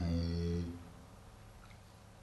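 A man's short, low, steady hum, lasting under a second at the start.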